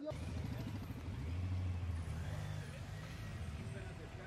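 A car engine running with a steady low rumble, swelling about a second in, with faint voices in the background.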